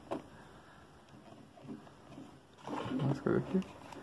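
Faint handling noises of plastic and foam as fingers pick the leftover old ear-pad remnants off a Goldentec 7.1 Attack headset ear cup, with a short click at the start. A voice murmurs briefly about three seconds in.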